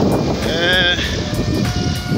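Wind noise on a handheld phone microphone while walking outdoors, loud and steady. A short wavering voice comes through about half a second in, and faint steady tones sound near the end.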